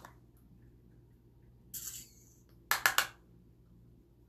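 A makeup brush swished briefly in a pressed bronzer compact, then a quick run of sharp taps of the brush against the compact, knocking off excess powder.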